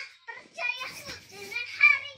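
Young children squealing and laughing as they play, in high-pitched bursts of voice, the loudest just before the end.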